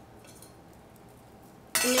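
Quiet kitchen room tone with no distinct sound, then a woman's voice starts near the end.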